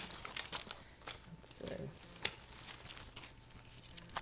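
Crinkling and rustling, with scattered light clicks and knocks, as items are picked through and handled on the floor.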